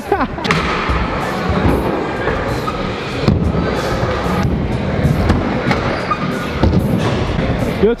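Stunt scooter wheels rolling on skatepark ramps, with several sharp thuds and clacks as the scooter lands and its deck strikes the ramp.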